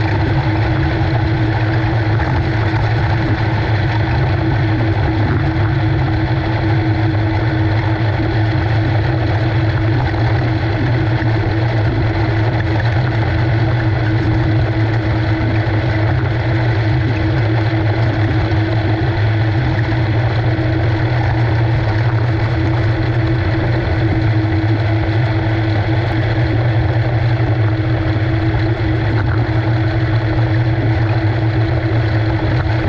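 A 360 winged sprint car's V8 engine running steadily at speed, heard from an onboard camera in the cockpit.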